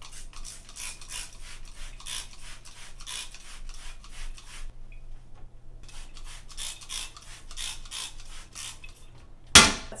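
Trigger spray bottle of vinegar-and-water cleaner squirting in quick repeated sprays, about three a second, in two runs with a short pause between them. A single loud knock near the end.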